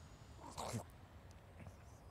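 A man's brief gagging noise in the throat, about half a second in, as he starts to make himself vomit.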